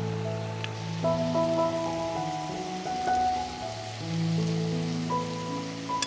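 Slow background music of long held notes over a steady sizzle of diced chicken breast frying in oil in a pan.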